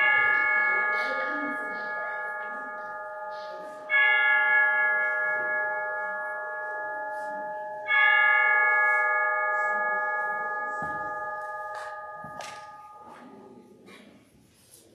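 A bell struck three times, about four seconds apart, each stroke ringing out with several clear pitches and dying away slowly. It marks the start of prayer.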